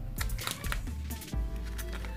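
Quiet background music with scattered light clicks and crinkles from the clear plastic wrapper around a bar of soap being handled.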